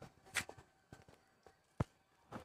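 Footsteps: a few soft, irregular steps, with a sharper knock near the end.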